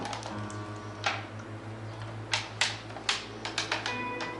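Buttons on a corded desk telephone being pressed to dial a number: a string of sharp clicks, several in quick succession near the end, over soft background music.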